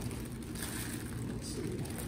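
Faint rustling and crinkling of a clear plastic drape as hands move inside it, over a steady low hum.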